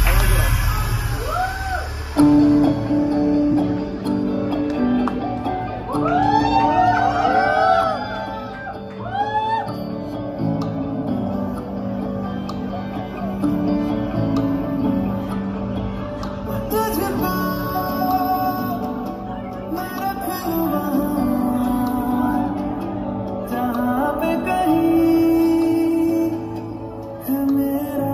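A Bollywood song playing over the hall's sound system: a singing voice over guitar and backing instruments.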